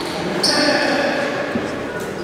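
Basketball gym ambience: voices talking across the hall and a basketball bouncing on the wooden court, with a short high squeak about half a second in.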